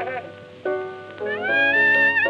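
1920s blues record with piano chords under a cornet that bends up into a held, wavering note about a second in, after a brief quieter moment.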